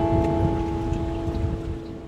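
The last strummed chord of an acoustic guitar ringing on and fading steadily, over a low rumbling noise.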